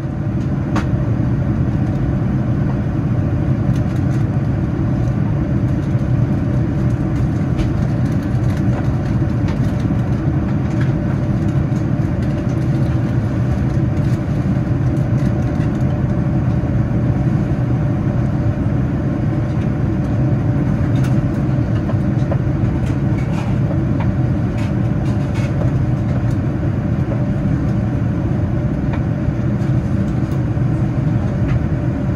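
Steady cabin noise of a Boeing 787-9 in flight, heard from a window seat beside the wing: a low rumble of its GEnx engine and the airflow, early in the descent. A few faint clicks come and go.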